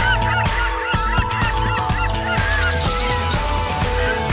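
Background music with a rapid flurry of short, hooked bird calls over it for the first couple of seconds.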